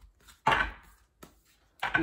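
Oracle cards handled over a tabletop: a short card swish or slap about half a second in, a faint tick a little later, and a brief sharp snap near the end as a card is pulled out and held up.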